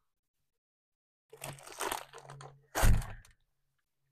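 Rustling and crinkling as things are handled inside a van, then a single loud thump a little before three seconds in.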